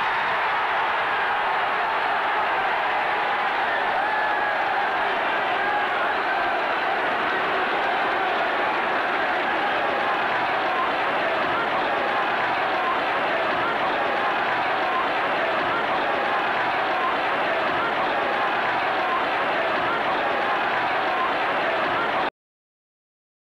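Football stadium crowd cheering after a goal, a steady, unbroken wall of voices.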